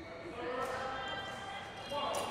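A person's voice calling out in a drawn-out call in a large indoor badminton hall.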